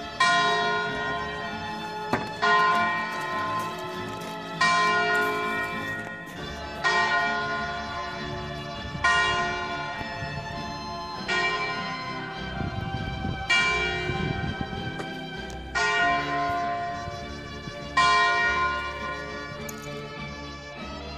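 A single church bell tolling slowly, struck about once every two seconds, each stroke ringing on and fading into the next.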